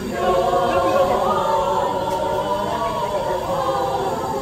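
Mixed choir of adult and child voices singing together, held chords moving from note to note.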